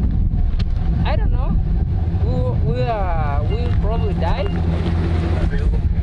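A steady low rumble from a vehicle engine running at idle close by, with brief phrases of speech over it.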